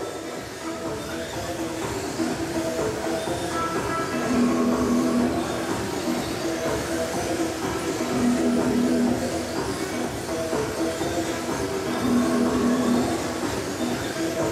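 Background music with a low held note that recurs about every four seconds, over a steady rushing noise from the hall and the Kyosho Mini-Z AWD electric RC cars running on the carpet track.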